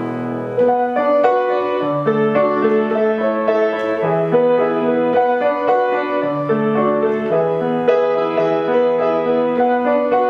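Carlmann baby grand piano being played: a melody above lower bass notes held a second or two each.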